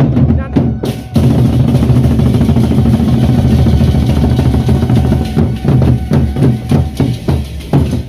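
Gendang beleq, the large two-headed Sasak barrel drums, beaten together by several drummers: a few separate strokes, then about a second in a dense, fast run of drumming that lasts several seconds before breaking back into separate strokes.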